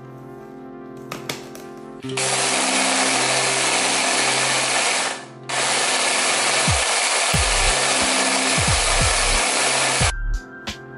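Electric mini food chopper grinding oats into flour, run in two loud pulses: one from about two seconds in, a half-second pause about five seconds in, then a longer run to the end.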